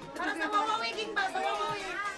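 Chatter: several high- and low-pitched voices of children and adults talking at once.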